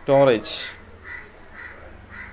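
A crow cawing in the background: three short, faint caws about half a second apart.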